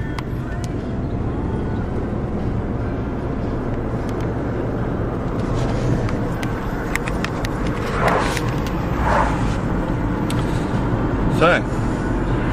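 Steady road and engine noise inside a moving car's cabin. There are a few light handling knocks on the camera, and several brief indistinct voice sounds in the last few seconds.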